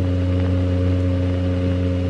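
A steady low hum with several overtones, even and unchanging throughout.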